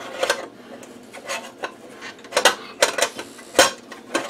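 Thin sheet-metal shield cover being fitted into the chassis of an Agilent E4419B power meter: a series of light metallic clicks and scrapes, about eight of them spread unevenly over a few seconds.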